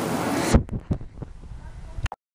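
Handling noise on a phone's microphone: a rushing sound that drops away suddenly about half a second in, with a sharp knock, then several softer knocks.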